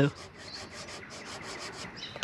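Felt-tip permanent marker scratching back and forth on a plastic milk container, a quick, even run of about six or seven strokes a second, as a line is drawn to mark the level of drained engine oil.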